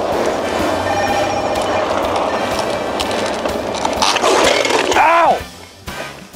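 Kick scooter's small hard wheels rolling over asphalt, a steady rough rumble that falls away about five seconds in, just after a short rise-and-fall voiced call.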